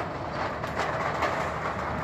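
Steady outdoor background noise in a parking lot: a low, even rumble with a few faint ticks.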